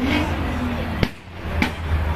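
Low exhaust rumble of a Volkswagen GTI pulling away, very loud, growing stronger near the end. There is a sharp crack about a second in.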